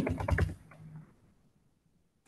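Quick run of computer keyboard keystrokes, heard through a video-call connection, then near silence after about a second.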